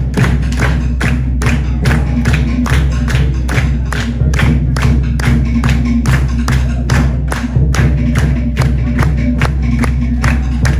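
Tahitian drum ensemble, skin drums and a hollowed-log to'ere slit drum, playing a fast, steady dance beat of about four sharp strokes a second.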